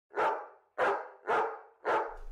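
A dog barking four times, evenly spaced about half a second apart, each bark short and sharp.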